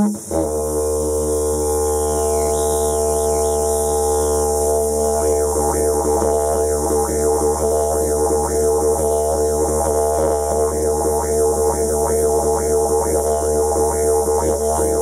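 Didgeridoo played yidaki style: a continuous low drone that dips briefly at the start, then from about four seconds in carries a fast rhythmic pattern of vowel-like sweeps shaped by the mouth and tongue.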